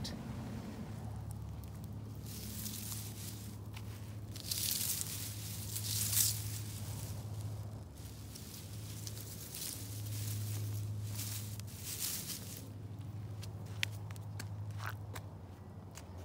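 Footsteps on garden ground with soft rustling, coming in several irregular bursts over a low steady hum.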